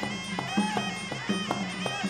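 Traditional Khmer boxing music: a sralai, the reedy Khmer oboe, plays a continuous wailing melody over a steady drum beat of almost three strokes a second.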